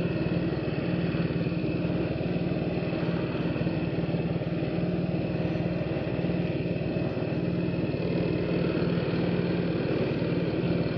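PGO Buddy 125 scooter's small single-cylinder engine running at a steady, even speed, heard from a camera mounted on the scooter, with road noise underneath.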